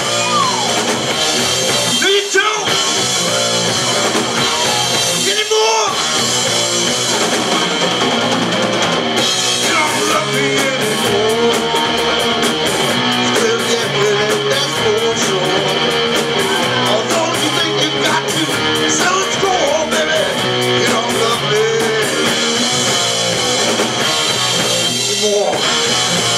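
Live rock band playing loud: electric guitars, bass and a drum kit. The low end drops out briefly a few times in the first six seconds, and from about nine seconds a fast cymbal beat drives the music.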